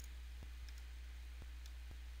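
A few faint computer-mouse clicks, three of them spread over the two seconds, over a steady low electrical hum.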